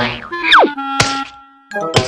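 Cartoon fall sound effects over background music: a quick descending whistle-like glide, then a sharp thump about a second in followed by a held note, and another thump near the end.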